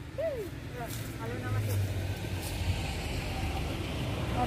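A road vehicle's engine rumbling as it passes, growing louder from about a second in. Brief voices sound over it near the start.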